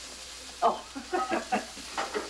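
A person says "Oh" and laughs, about half a second in, over a steady background hiss.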